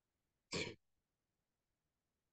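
A single brief throat clear, about half a second in, from the person speaking in the online lecture.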